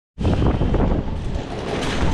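Wind buffeting the microphone: a loud, gusting low rumble with a hiss over it.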